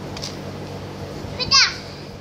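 A toddler's short, high-pitched squeal that falls in pitch, about one and a half seconds in, over a steady low hum.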